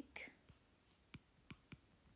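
Near silence with about four faint taps of a stylus tip on a tablet's glass screen during handwriting.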